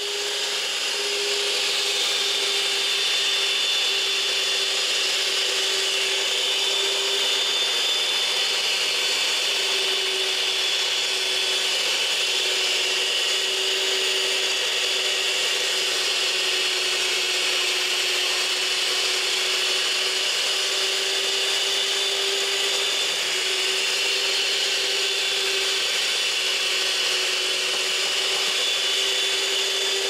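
Paula Deen Family Collection electric stand mixer running steadily at one speed, its beaters churning mashed sweet potatoes with added sticks of butter for pie filling. A constant motor hum with one steady tone under it.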